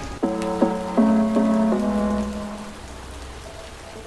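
Rain falling steadily, heard with background music: a short run of keyboard notes, about two a second, that dies away after about two seconds.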